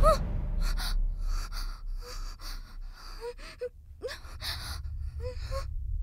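A woman gasping and panting for breath, two or three ragged breaths a second, some catching in short whimpering cries, over a low steady hum.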